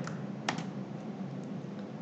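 Computer keyboard keys pressed to select and paste text: one sharp key click about half a second in, then a couple of fainter ones, over a steady low hum.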